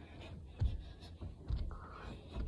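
Two dull thuds about a second apart, the first the louder, with light scraping and rubbing noises between them.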